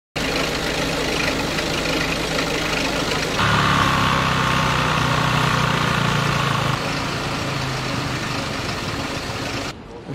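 Motor vehicle engines idling steadily. A closer engine comes in louder a little over three seconds in and eases off about three seconds later. The sound stops abruptly just before the end.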